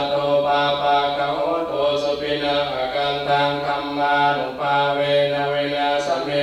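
Buddhist Pali chanting, a continuous recitation held on a near-level pitch with short breaks between phrases.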